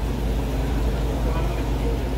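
Steady low rumble of restaurant room noise, with faint indistinct voices in the background.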